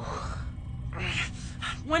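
An animated character's voice: the trailing end of a startled "oh", then a breathy gasp about a second in, over a low steady hum.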